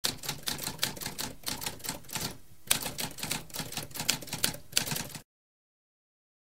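Typewriter keys clacking in a quick run of keystrokes, several a second, with a short pause about halfway through; the typing stops abruptly about five seconds in.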